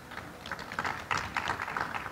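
Light, scattered applause from an audience: many quick, uneven claps, fairly quiet.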